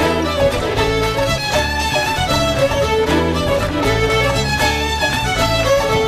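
Shetland fiddle band playing a traditional tune live, fiddles leading over a steady bass accompaniment.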